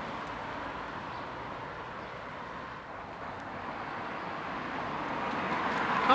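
Steady outdoor noise of road traffic, slowly growing louder near the end.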